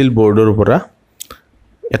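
A man speaking Assamese, then a pause about a second in with two faint clicks, before he speaks again near the end.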